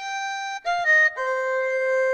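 GarageBand iOS's sampled erhu played from the on-screen keyboard: a short phrase of about four sustained bowed notes. It opens on a held note and steps down to a long held lower note that fills the second half.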